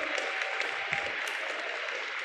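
Audience applauding, a steady patter of scattered claps.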